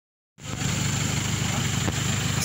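A vehicle engine idling steadily: an even, low rumble that comes in about half a second in.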